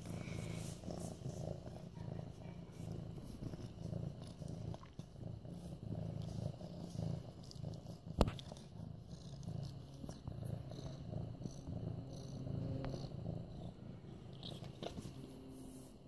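Orange tabby kitten purring steadily while being petted, close to the microphone, in a low even pulse. A single sharp click about eight seconds in.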